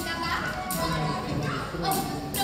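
Stage musical number: many young voices singing together over musical accompaniment with crisp percussion hits, heard from the audience seats in a large hall.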